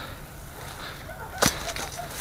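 A single sharp crack about one and a half seconds in, against faint rustling.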